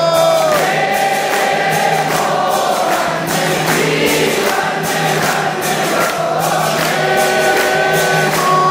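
Temple congregation singing the aarti hymn together in chorus, many voices over a regular rhythmic beat.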